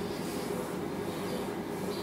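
Steady low background hum of the room and microphone during a pause in speech, with faint soft high sounds coming and going.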